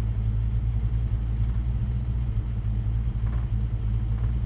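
Vehicle engine idling steadily, heard from inside the cab as a constant low hum.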